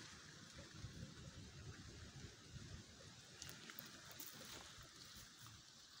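Near silence: faint outdoor background, with a few faint light ticks a little past the middle.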